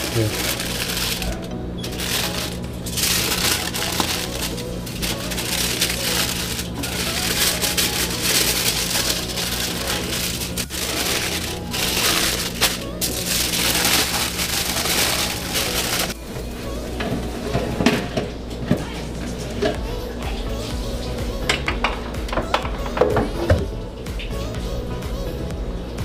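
Aluminium foil crinkling and rustling as it is folded and wrapped by hand, over steady background music. The crinkling stops about two-thirds of the way through, and a few scattered clicks and knocks follow.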